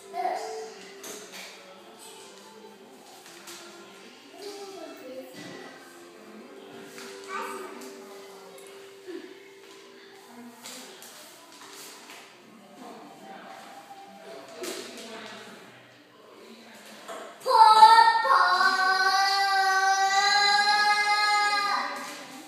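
A child's high voice holding a long, slightly wavering sung note for about four seconds near the end, well above faint background music and chatter.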